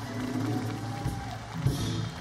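Live country band's closing chord ringing out on guitars, bass and drums, with a held guitar note, and a final drum and cymbal hit a little past halfway. Audience applause begins near the end.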